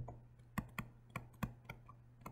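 Faint, irregular clicks of a stylus tapping and writing on a tablet screen, about six in two seconds.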